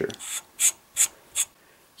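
An AR-15 castle nut and buffer tube being unscrewed by hand from the lower receiver's threads: metal rubbing on metal in four short scraping strokes, about two a second.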